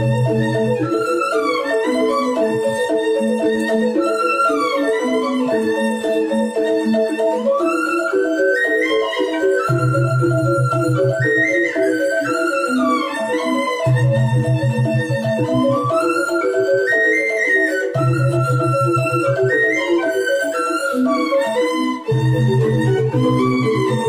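Balinese rindik gamelan: bamboo xylophones playing fast, evenly repeating interlocking strokes under a bamboo suling flute melody that rises and falls in long phrases. A low bass part comes in for stretches of a few seconds several times.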